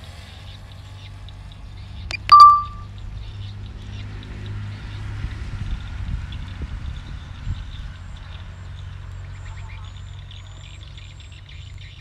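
Birds chirping faintly over a steady low hum, with one short, loud, high tone about two seconds in.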